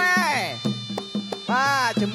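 Traditional Kun Khmer ring music: a sralai reed pipe plays a sliding melody over a steady beat of drum strokes. Its line falls in a long slide at the start and swoops up and down again near the end.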